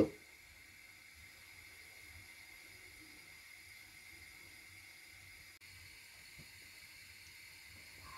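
Faint steady hiss of water heating in a frying pan on a gas burner.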